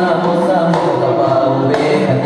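Accompaniment music for a Minangkabau indang dance: a group of voices singing together over percussion, with sharp strikes about a second apart.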